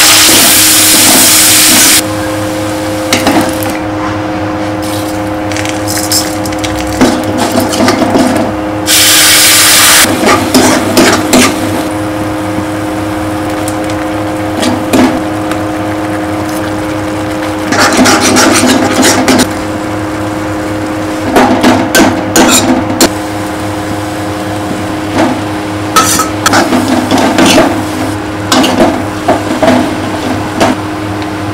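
Sliced onions dropped into hot oil in a metal kadai, sizzling loudly for a couple of seconds, with a second loud sizzle about nine seconds in. After that a metal ladle scrapes and clinks against the pan in several short bouts of stirring, over a steady hum.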